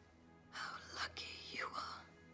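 A woman's breathy whisper, about a second and a half long, over soft background music.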